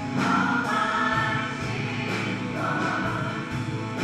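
Live worship band: several singers on microphones singing together over amplified band accompaniment, with a steady beat about twice a second.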